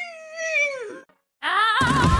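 A single drawn-out meow that falls steadily in pitch and stops about a second in. After a short silence, music starts about a second and a half in and is the loudest sound.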